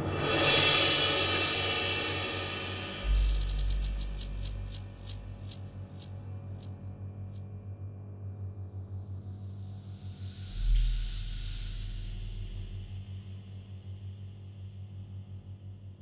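Contemporary orchestral music with live electronics built on electrical sounds, over a steady low hum. A loud wash dies away at the start. About three seconds in there is a sudden burst, followed by a train of crackling clicks that slow down and stop. A second burst near eleven seconds brings a high hiss that swells and fades, and the music then dies away.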